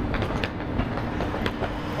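Road traffic on a city street: a vehicle engine running nearby, a steady low rumble.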